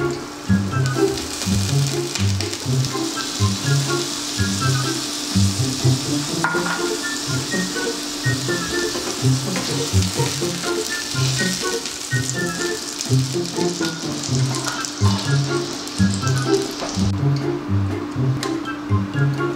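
Hot dogs sizzling in a frying pan, under background music with a steady bass beat. The sizzle stops near the end while the music goes on.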